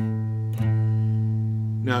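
Electric guitar with the low E string fretted at the fifth fret and the open A string picked together, both ringing on the same low A. They are picked again about half a second in and the note sustains steadily, the two strings matching in pitch because they are in tune.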